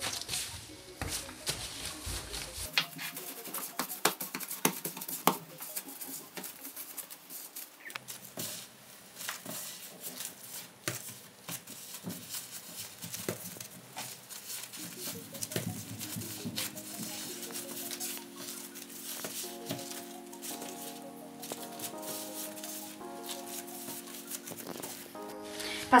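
Quiet background music whose notes become clearer about halfway through, under soft taps and handling sounds of yeast dough being pulled apart and pressed on a countertop by gloved hands.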